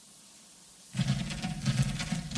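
Low hiss, then about a second in reggae music starts suddenly, with a heavy bass line and a strummed rhythm.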